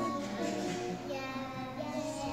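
A group of preschool children singing a song together.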